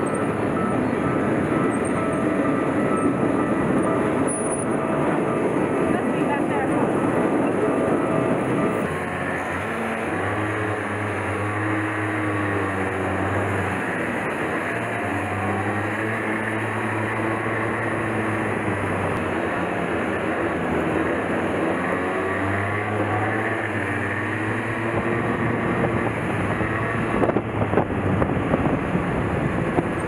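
Small go-kart engine heard from the kart itself under wind noise, its note rising and falling as the kart speeds up and slows in traffic. For the first nine seconds a louder rushing noise covers it, as a train runs alongside at a level crossing.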